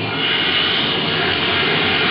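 A loud, steady rushing noise with no clear pitch, holding even throughout, with a faint higher band in it.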